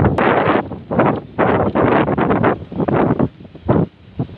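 Wind buffeting the microphone in uneven gusts, loud, rising and dropping every half second or so.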